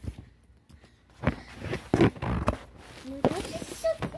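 Handling knocks and rustling as toys are passed across and the recording phone is moved, loudest in the middle. Short bits of a child's voice near the end.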